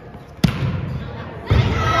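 A volleyball struck hard with a sharp smack about half a second in, then a second heavy impact about a second later as the ball lands on the gym floor, followed by players' loud shouts, echoing in the large hall.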